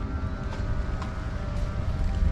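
Wind buffeting the microphone in a steady low rumble, with faint steady background music tones.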